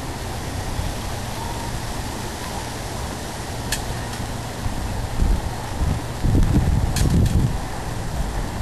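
Wind on the microphone outdoors: a steady low rumble that gusts harder from about five seconds in, with two faint sharp clicks, one near the middle and one near the end.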